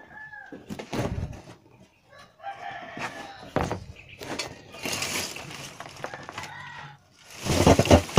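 A rooster crowing several times in the background, with sharp metal knocks as the steel drum kiln and its ring are handled. Near the end comes a loud clatter of charcoal lumps tumbling out of the tipped drum onto a plastic sheet.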